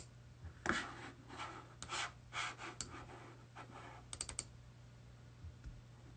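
Faint soft taps and rustles, then a quick run of four or five small sharp clicks about four seconds in, over a low steady hum.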